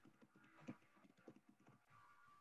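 Faint typing on a computer keyboard: irregular key taps, one louder tap about two-thirds of a second in.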